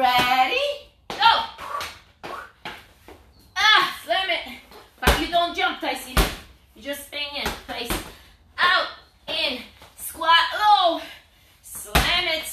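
A medicine ball slammed onto a rubber gym floor, with three heavy thuds between about five and eight seconds in. A voice runs almost throughout.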